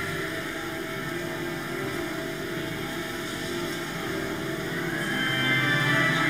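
Pipe organ playing long sustained chords, softer at first and swelling louder about five seconds in.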